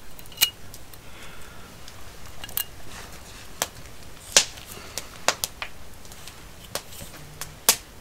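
Sharp, irregular clicks and knocks of small hard objects, about eight in all, the loudest about four and a half seconds in and near the end.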